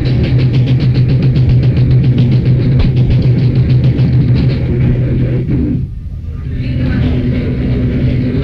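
Live rock band playing loud, with fast drums and guitar, breaking off abruptly about six seconds in; a steady amplifier hum and stage noise follow.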